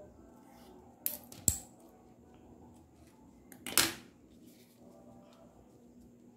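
Small handling sounds while a grosgrain ribbon bow is tied off with thread: two sharp clicks a little after a second in, and a short scraping rustle just before four seconds.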